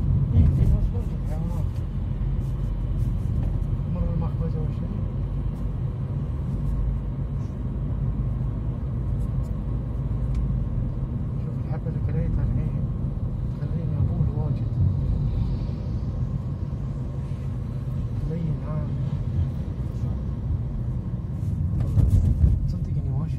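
Steady low rumble of road and engine noise from inside a moving car.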